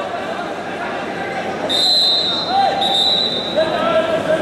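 Two steady, high whistle blasts, each about a second long, the first starting a little before halfway, with the murmur of voices in a large hall underneath.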